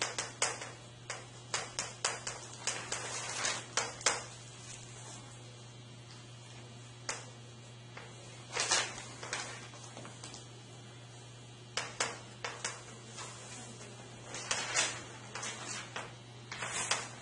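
Chalk writing on a blackboard: sharp taps and short scratching strokes in irregular bursts, with pauses of a second or two between them, over a steady low room hum.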